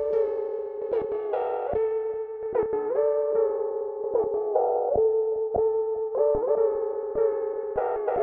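Dark trap instrumental beat: a synthesizer lead holds one steady note while other notes slide up into it about once a second, over scattered sharp clicks, with the deep bass mostly absent.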